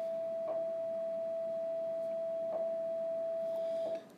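A steady, unwavering single-pitch tone, like a sustained beep, held throughout and cutting off just before the end.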